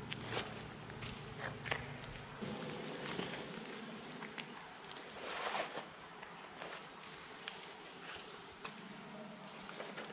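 Soft rustling and scattered light clicks from a discarded cloth shirt being prodded and lifted by hand on a wet tunnel floor, with a louder rustle about five and a half seconds in, over a steady high hiss. A low hum stops about two and a half seconds in.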